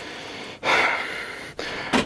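A person breathing out hard through the mouth, about half a second in and lasting just under a second, then a softer, lower-level breath or rustle.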